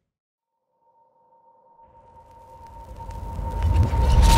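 Near silence, then an electronic outro sound effect fades in: a steady held tone with a low rumble and whoosh beneath it, swelling louder toward the end.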